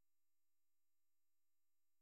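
Near silence, with only a very faint steady tone under it.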